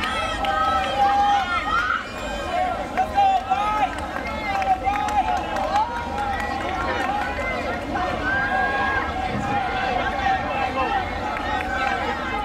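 Spectators shouting and cheering runners on, many voices overlapping with sharp yells rising out of the din.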